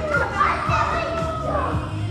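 A group of children's voices calling and chattering over background music in a large gym hall.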